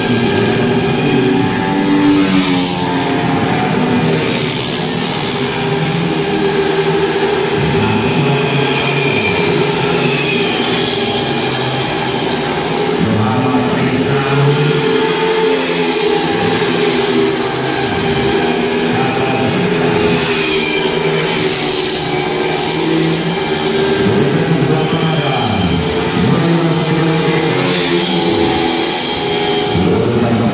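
Several racing 150cc automatic scooters at full throttle, their engines revving and whining, the pitch rising and falling over and over as bikes accelerate out of corners and go by.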